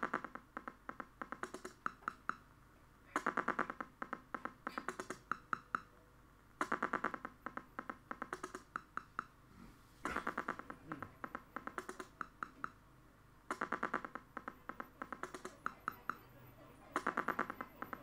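A looped electronic rhythm of dry clicks and ticks: a dense burst of rapid clicks comes round about every three and a half seconds, each trailed by sparser single ticks.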